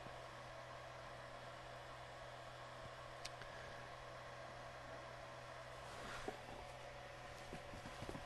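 Faint steady fan hum and hiss from the running Ender 3 V2 3D printer, its hotend at temperature while extruding filament. One light click comes about three seconds in.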